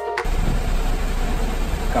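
Steady low rumble of a coach bus heard from inside the passenger cabin, engine and road noise. A music cue cuts off just at the start.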